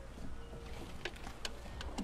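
Faint water sounds of a California sea lion swimming in a pool, with a few soft ticks.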